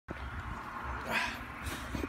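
A dog whimpering briefly about a second in, over a low steady rumble.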